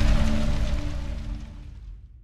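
Tail of a logo-intro sound effect: a dense rumbling noise with a few low held tones, fading steadily away to near silence by the end.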